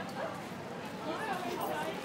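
A small dog barking briefly about a second in, over the talk of passers-by.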